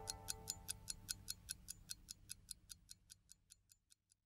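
Faint clock-ticking sound effect, fast and even at about five ticks a second, fading away and gone about three seconds in, with the last of a held music chord dying out at the start.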